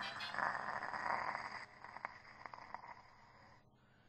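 A steady rushing hiss that drops in level after a second and a half, carries a few faint clicks, and stops about three and a half seconds in.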